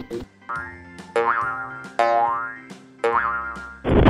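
Cartoon sound effects over children's background music: three short pitched tones about a second apart, each rising in pitch and dying away. Near the end a loud rushing blast, a cartoon explosion, sets in.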